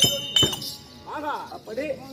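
Closing strokes of the folk-theatre ensemble's drum and small hand cymbals: two sharp clinking strikes in the first half-second, the cymbal ring cutting off soon after. A man's voice follows briefly about a second in.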